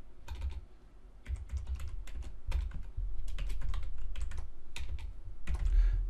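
Typing on a computer keyboard: uneven runs of key clicks, with a short pause about a second in.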